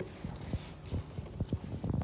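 Soft, irregular taps and thumps, about half a dozen in two seconds, with a little plastic rustle, as a hand pats and shifts plastic-wrapped parcels on a tiled floor.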